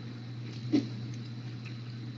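Steady electrical hum and hiss from an open microphone in a voice chat, with one faint brief sound about three quarters of a second in.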